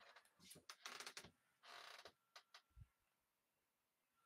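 Near silence, with a few faint clicks and short soft rustles.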